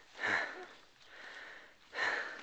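Heavy breathing of a runner mid-race, close to the microphone: a loud breath soon after the start, a softer one in the middle and another loud one at the end.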